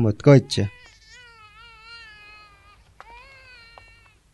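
Swaddled infant crying: two faint, wavering wails, the first starting about a second in and lasting about two seconds, the second starting about three seconds in.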